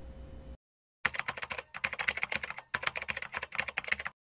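Computer keyboard typing: a fast, dense run of key clicks that starts about a second in and breaks off briefly in the middle before carrying on.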